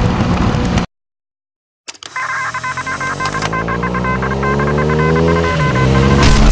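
Motorcycle riding noise that cuts off abruptly just under a second in. After about a second of silence, an intro sound effect starts: a steadily rising drone overlaid with a rapid string of electronic beeps, swelling toward music at the end.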